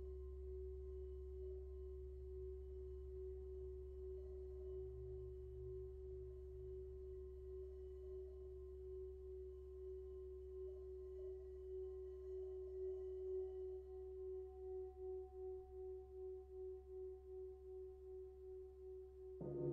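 A hand-held Tibetan singing bowl sung by rubbing a wooden striker around its rim, giving one steady tone with fainter higher overtones. In the last few seconds the tone swells and fades in a slow, even pulse, a little under two a second.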